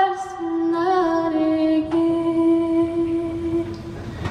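A woman singing solo, live through the PA, drawing out a slow melody in long notes. A low note is held for about three seconds, and the voice fades near the end.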